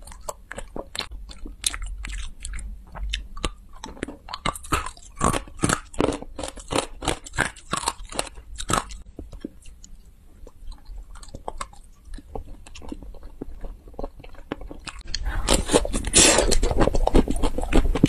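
Close-miked mouth sounds of a person biting and chewing crunchy sweets: a quick run of crisp crunches, a sparser patch, then a louder, dense burst of crunching near the end.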